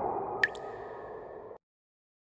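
Logo intro sound effect: a fading whoosh, then a sharp bright click about half a second in with a short ringing tone, all cut off abruptly about a second and a half in.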